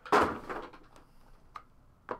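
A small cardboard card box sliding across a tabletop: a brief scraping rush that fades within half a second, then a single light tap about a second and a half in as the next box is handled.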